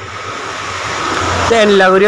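Background road traffic noise swelling over about a second and a half, then a man's voice starting to speak.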